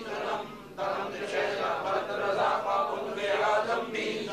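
Men's voices chanting a devotional recitation together, sustained and melodic, with a brief breath pause about three quarters of a second in.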